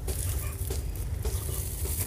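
Crackly rustling of artificial pine wreaths and their plastic packaging as they are handled, over a steady low rumble of the phone being handled.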